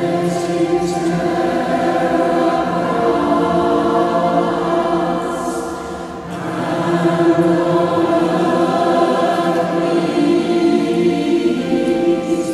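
Mixed choir of men and women singing sustained phrases, with a short break between phrases about six seconds in.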